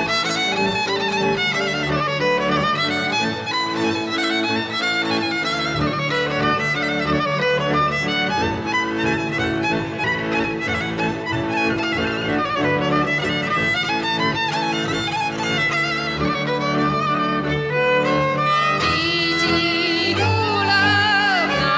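Hungarian folk fiddle playing a fast, ornamented melody over sustained low string accompaniment. A woman's singing voice comes in just before the end.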